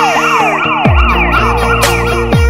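Police siren on a fast yelp, a quick rise-and-fall in pitch repeating about three to four times a second, over electronic music whose deep bass comes in with a falling sweep about a second in.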